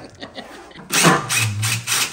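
Cordless impact driver starting up about a second in and running loudly, driving a screw on a metal wall bracket, most likely backing it out to remove the bracket.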